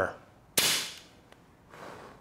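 A single sharp bang with a short hissing tail about half a second in, like a cap-gun shot, followed by a faint click.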